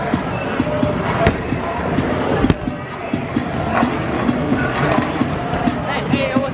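Busy bowling-alley din: people talking over background music, with a few sharp knocks.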